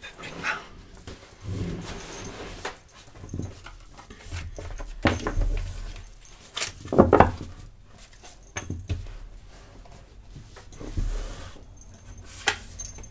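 A deck of tarot cards being shuffled and handled by hand, with irregular soft rustles and taps, and one louder short sound about seven seconds in.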